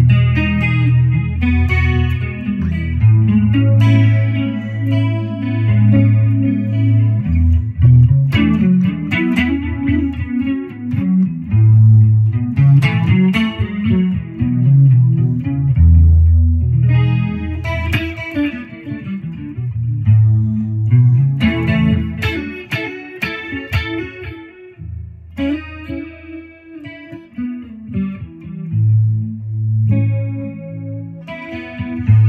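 Strat-style electric guitar played solo through an effects unit: a slow, mellow piece in E major built on E and A major chords, picked chord tones ringing over sustained low bass notes.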